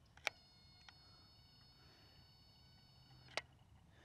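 A click, then a faint steady high electronic whine in several pitches held for about three seconds, cut off by a second click: a handheld megohm meter's test button pressed and released, its circuit whining while it tests insulation from chassis ground to the contactor.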